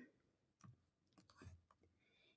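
Near silence: room tone with two faint, short clicks, about two-thirds of a second and a second and a half in.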